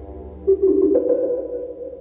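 Improvised electronic noise music: a droning tone with many overtones fades, then a sudden loud pitched tone cuts in about half a second in, joined by a higher tone about a second in, both slowly dying away.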